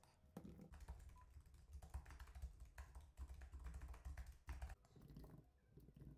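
Faint typing on a computer keyboard: a quick, uneven run of key clicks that thins out near the end.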